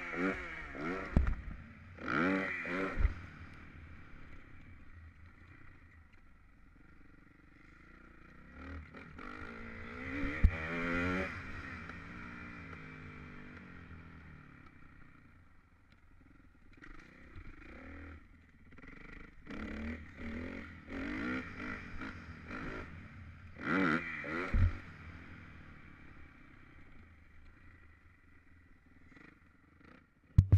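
Dirt bike engine revving up in several surges and easing off between them as the bike is ridden over a bumpy dirt track, with knocks and rattles from the bike over the bumps.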